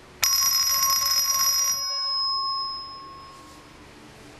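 Electric alarm bell ringing in one burst of about a second and a half, set off by a phone ring signal through a Wheelock KS-16301 ringing relay. The burst stops abruptly and the gong rings on, fading out.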